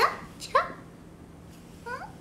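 Three short, rising, high vocal squeaks from a woman, two close together at the start and one near the end, with quiet between them.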